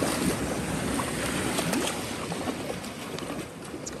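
Sea waves washing on the shore as a steady rushing noise, with some wind on the microphone, easing slightly near the end.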